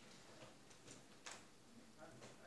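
Near silence: room tone in a lecture hall, with a few faint clicks.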